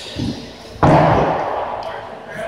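A single loud, sharp impact a little under a second in, dying away over about a second in the echo of a large gym hall.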